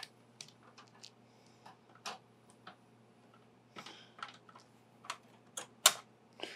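Light, irregular clicks and taps of small hardware being handled as the rear expansion-slot bracket plate of a Lian Li O11 Dynamic Mini PC case is unscrewed and worked loose, with one sharper click near the end.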